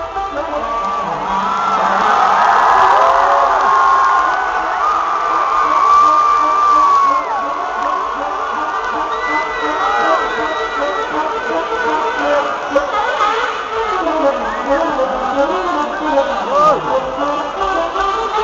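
Large arena crowd screaming and cheering, with a saxophone playing held notes and short phrases over it; no full band beat underneath.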